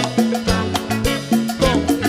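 Live tropical cumbia band playing an instrumental passage between sung verses: a bass line and drum kit keeping a steady beat under a pitched melody.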